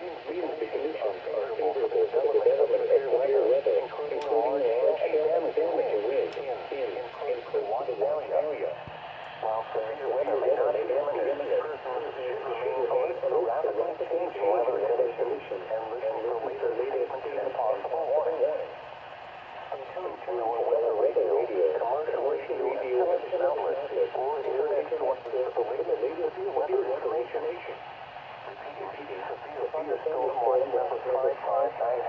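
A weather radio broadcast voice reading a weather bulletin through the small speaker of a Midland weather alert radio. It sounds narrow and thin, with a few short pauses between phrases.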